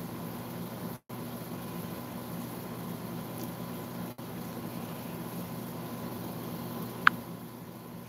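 Steady low hum and hiss of room noise, cutting out completely for a moment about a second in and again about four seconds in, with one short, sharp chirp about seven seconds in.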